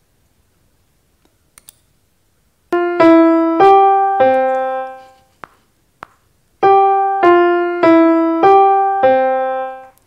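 Two short piano phrases, one after the other, each a run of about five notes a little over half a second apart, separated by a pause of about a second and a half. They form a matching pair from a same-or-different melody test (Musical Ear Test).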